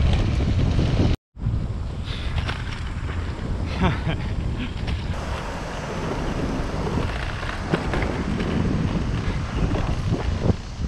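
Wind rushing over the microphone of a camera on a moving bicycle, a steady rumbling noise that cuts out abruptly about a second in and picks up again straight after.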